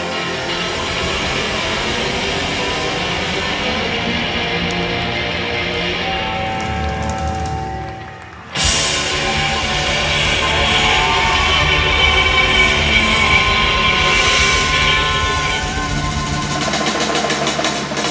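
Live rock band playing loudly, with electric guitars, bass guitar and drums. The music drops away briefly about eight seconds in, then comes back in abruptly at full volume.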